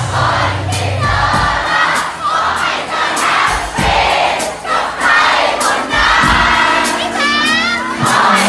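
Live band playing a pop-rock song, drums keeping an even beat with cymbal hits, while the audience sings and shouts along with the singers. Near the end one voice slides up and down over the crowd.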